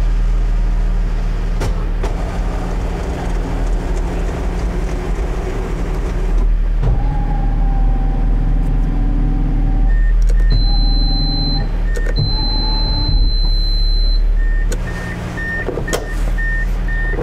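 Honda CR-X del Sol's electric TransTop roof mechanism working over the idling engine: its electric motors whine in several stop-and-start stages, with a high steady tone in the middle. Near the end a warning beep starts repeating about twice a second, which keeps sounding until the roof is locked.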